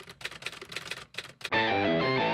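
A quick run of typewriter-style key clicks, about a dozen in a second and a half, as a typing sound effect. About a second and a half in, a distorted electric guitar chord comes back in with sliding pitches.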